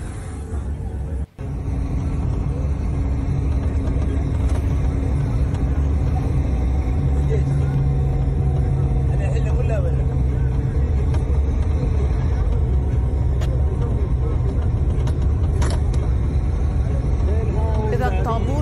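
Steady low engine and road rumble of a moving vehicle, heard from inside it, with a brief cut-out a little over a second in.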